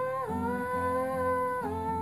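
A wordless sung vocal line held in long notes over acoustic guitar chords, the voice changing pitch just after the start and dropping lower near the end.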